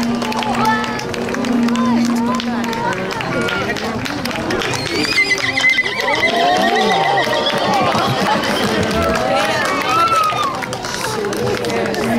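A horse walking on asphalt with clip-clopping hooves, giving a whinny midway, amid crowd chatter.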